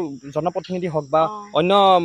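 Speech over a steady, high-pitched insect drone.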